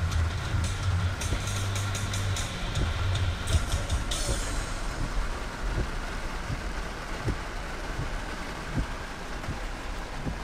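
Inside a car moving slowly in rain: rain on the windshield and roof over steady cabin and road noise, with a low engine hum in the first few seconds.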